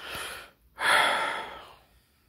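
A man's breathing close to the microphone: one breath trailing off about half a second in, then a louder, longer breath a moment later.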